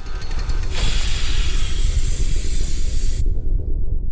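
Inserted sound effect: a loud, steam-like hiss over a deep rumble. The hiss swells in under a second in and cuts off abruptly just past three seconds, leaving the rumble to fade near the end.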